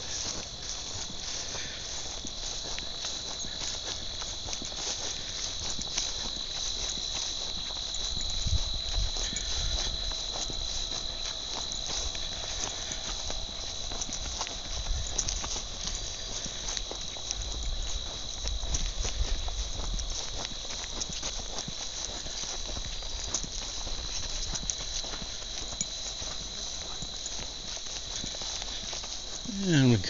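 A steady chorus of crickets chirping, heard as one continuous high-pitched trill, with a walker's footsteps on a grassy path and stretches of low rumbling between about eight and twenty seconds in.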